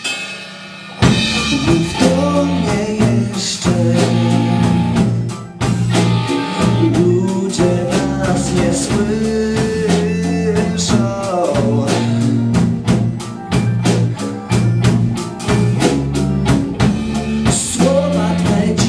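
Live blues-rock band playing: drum kit, bass and electric guitar, with a man singing into a microphone. The band drops to a brief lull at the start and comes back in at full volume about a second in.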